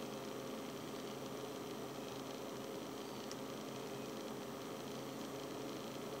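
Steady background hiss with a low, even electrical-sounding hum and no distinct event; a single faint tick about three seconds in.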